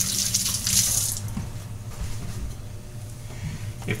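Kitchen sink faucet running as fingers are rinsed under it; the water shuts off about a second in.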